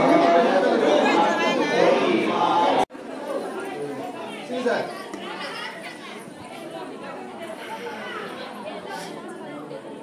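Crowd chatter, many people talking at once. It is loud and close until it cuts off abruptly about three seconds in, and then quieter, more scattered voices go on.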